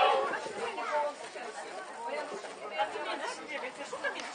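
Chatter of several people talking at once, their voices overlapping and indistinct, just after a sung chord has ended.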